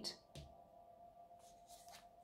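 Near silence: a faint steady tone, with brief soft rustles of a tarot deck being handled, once about a third of a second in and again past the middle.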